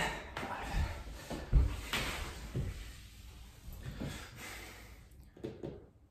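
Irregular thumps and rustling picked up by a clip-on microphone on a man's shirt as he comes up off the floor after a set of push-ups. The strongest thump is about one and a half seconds in, and the last few thumps are fainter.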